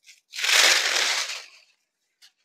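Saree fabric rustling as it is lifted and unfolded on a counter: one loud rustle lasting just over a second, with a few faint ticks around it.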